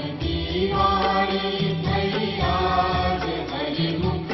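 Devotional aarti music: a hymn sung in a chanting style with instrumental accompaniment.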